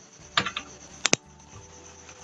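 Computer mouse clicking: a short run of clicks about half a second in, then a sharp double click just after a second.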